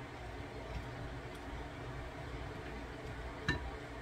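Faint stirring of a salad with a wooden spoon in a glass bowl over a low, steady room hum, with a single sharp tap about three and a half seconds in.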